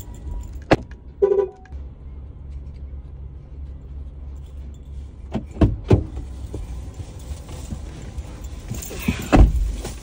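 Low steady hum inside a parked car's cabin, broken by sharp clicks as the driver's door is opened about five and a half seconds in, then a heavy thud near the end as someone gets in and shuts the door.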